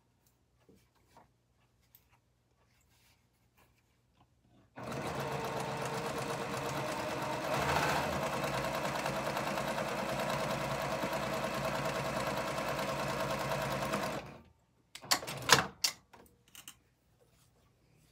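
A Baby Lock Accomplish straight-stitch sewing machine running steadily for about ten seconds, starting about five seconds in, as it stitches a seam on a quilt block. It stops suddenly and a few sharp clicks follow.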